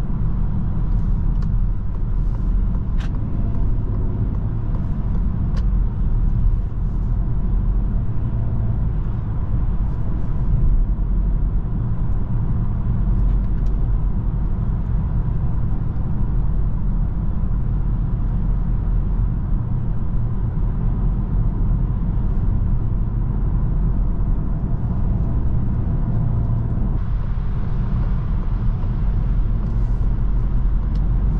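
Cabin sound of a 2023 Citroen C5 Aircross at motorway speed: a steady low rumble of road and tyre noise over the hum of its 1.2-litre three-cylinder petrol engine. The road hiss rises a little near the end.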